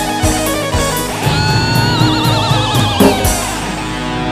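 Dangdut instrumental passage on a Yamaha PSR-S975 arranger keyboard: a steady drum beat under a lead voice that slides up into one long held note with a wide vibrato, about a second in.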